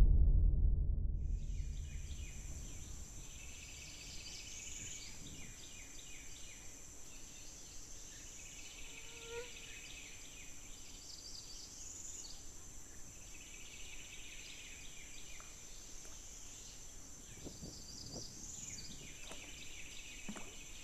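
Faint wetland ambience: a steady high insect drone that swells every few seconds, with scattered bird chirps. A low rumble fades out over the first two seconds.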